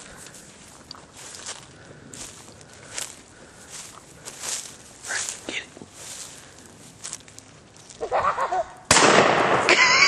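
Footsteps rustling through brush and grass. A voice comes a little before the end, then a single loud shotgun shot near the end.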